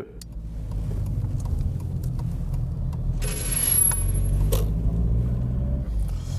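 Car being driven, heard from inside the cabin: a steady low rumble of engine and road noise. About three seconds in, a hiss swells over it for a second and a half and then stops.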